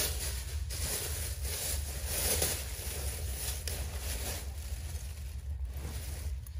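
A plastic shopping bag rustling and crinkling continuously as clothing is pulled out of it, with small swells in the noise, over a steady low rumble.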